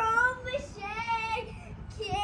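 A child's high voice singing or chanting without clear words, in several held, wavering notes.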